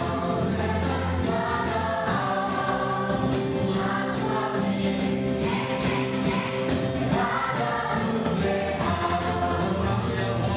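A man and a woman singing a gospel song together into microphones, over amplified backing music with a steady beat. The sung notes are held and change every second or so.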